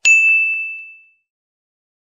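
A notification-bell sound effect: a single high bell ding, struck once and ringing out, fading away over about a second.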